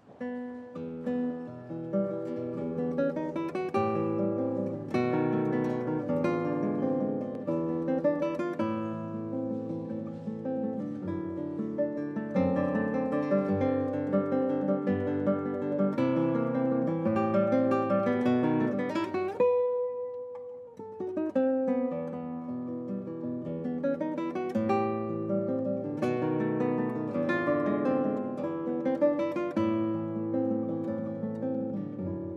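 Solo nylon-string classical guitar, fingerpicked, opening a short waltz. About two-thirds of the way through, the music thins to one held note, then the melody and bass pick up again.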